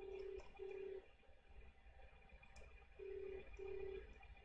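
Telephone ringback tone in the Australian double-ring cadence: two short, low, steady beeps about a fifth of a second apart, then the same pair again about three seconds later. It signals that an outgoing call is ringing at the far end and has not yet been answered.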